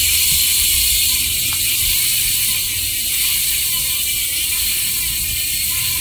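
Freehub of a Campagnolo carbon rear wheel with a ceramic-bearing hub, coasting freely after a spin: its pawls give a loud, fast, steady ratcheting buzz that eases slightly as the wheel slows.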